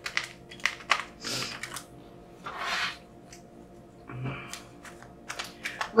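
A deck of tarot cards being shuffled by hand: a run of light card clicks and taps, with two longer swishes of cards sliding together, one just over a second in and one near three seconds.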